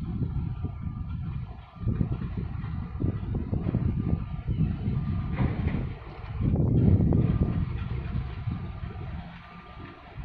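Low rumble that swells and fades unevenly, loudest about seven seconds in, with faint steady hums above it: a laden container ship passing close under way, mixed with wind on the microphone.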